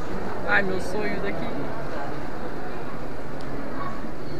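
People talking indistinctly in the background, a steady blend of voices with no single clear speaker.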